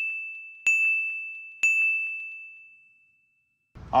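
A high bell-like ding sound effect struck three times about a second apart, each a clear ringing tone that fades away, the last dying out about three seconds in.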